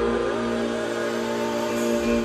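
Live band music: a held, sustained chord, with one note bending upward about a quarter of a second in.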